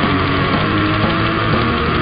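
Death metal band playing: distorted guitars over fast, dense drumming, with one long high note held through it.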